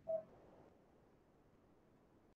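Near silence: a faint steady hiss, with one brief short tone-like sound at the very start.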